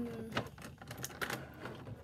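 An irregular run of quick clicks and crinkles from plastic packaging being handled as a pistol-grip RC boat transmitter is pulled out of its box.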